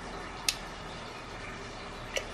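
A single light click as a porcelain Christmas-tree ornament is handled, against low, steady room noise.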